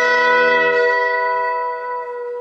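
Electric guitar's final chord ringing out, several sustained notes slowly fading.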